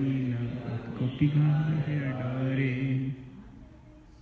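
Voices chanting a Bengali scripture verse together on long held notes, breaking off about three seconds in.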